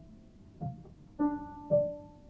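Sparse, slow piano music: three single notes or small chords, each struck and left to ring out, with a soft low thump under some of them. The last, about two-thirds of the way through, is the loudest.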